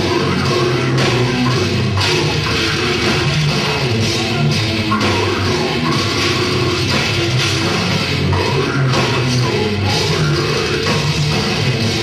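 A live brutal death metal band playing at full volume: heavily distorted electric guitars and a fast drum kit in a dense, unbroken wall of sound.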